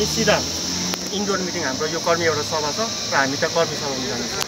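A voice speaking over a steady high-pitched hiss.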